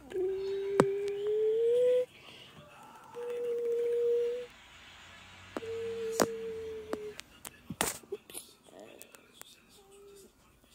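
A child humming three long, steady notes, the first gliding upward at its end and the second a little higher, with a few sharp clicks from the plastic toy garbage truck being handled.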